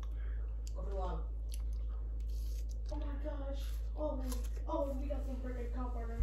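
Someone chewing a bite of chocolate-covered strawberry, with small mouth clicks, and a few quiet stretches of her voice from about halfway through.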